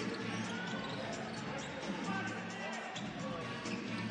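Live basketball arena sound during play: a ball dribbling on the hardwood court over a steady arena background with faint music.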